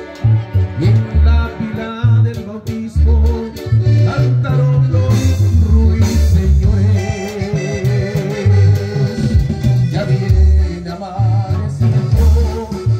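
Band music with a strong bass line stepping through a repeating pattern of low notes under a wavering melody.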